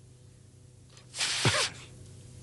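A person sneezing once, about a second in: a sudden loud burst with a voice falling in pitch, lasting about half a second.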